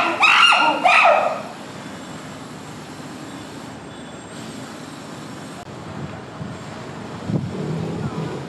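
A chimpanzee giving a few short, high calls in the first second and a half, then only steady background noise.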